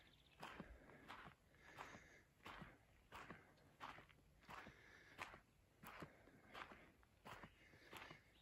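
Faint footsteps of a person walking on a dirt forest trail strewn with dry grass, about three steps every two seconds.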